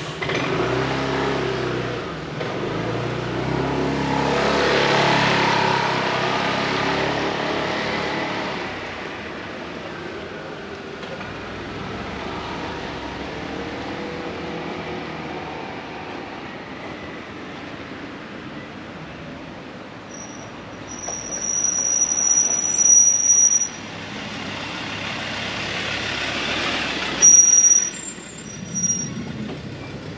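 A motor vehicle passing close on a narrow street, its engine loudest in the first several seconds and then fading into a steady background rumble. Later there is a high, steady squeal twice, the second starting with a sudden loud onset.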